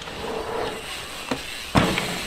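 Dirt jump bike tyres rolling over packed dirt, with a small knock about halfway and a louder thump near the end.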